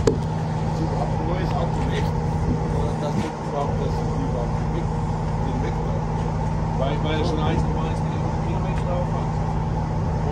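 Semi-truck's diesel engine idling, a steady unbroken drone.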